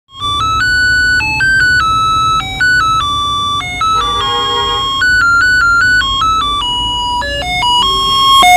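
A three-pin melody IC driving a small loudspeaker through a transistor, playing a simple one-note-at-a-time electronic tune of buzzy, bright notes in quick steps, over a low hum.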